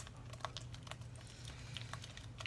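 A spatula stirring peanut butter into a wet banana-and-egg batter in a ceramic mixing bowl: faint, irregular soft clicks as it works against the bowl.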